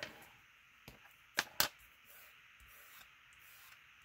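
Faint rubbing of a plastic bone folder on cardstock, then two sharp taps a fraction of a second apart as the bone folder is set down on a wooden table.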